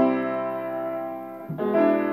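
Upright piano playing slow sustained chords: a chord rings out and fades, then a new chord with a low bass note is struck about one and a half seconds in.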